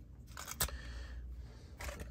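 Faint handling sounds of toy train cars: a brief rustling scrape and one light click about half a second in, and another short rustle near the end.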